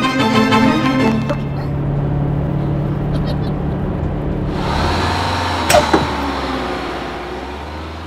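Cartoon soundtrack. Pitched music plays for the first second or so, then gives way to a low steady drone. About halfway through, a hissing swell comes in, and a single sharp hit with a falling sweep sounds near the six-second mark.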